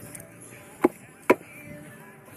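Two sharp knocks of hard building material or a tool striking, under half a second apart, each with a brief ring.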